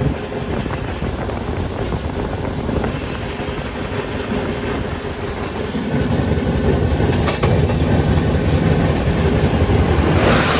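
Passenger train running, heard at an open carriage door: a steady noise of the wheels on the track that grows louder about six seconds in.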